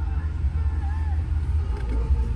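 Faint voice from the car's factory FM radio over a steady low rumble in the cabin of a 2013 Subaru Impreza with its engine running.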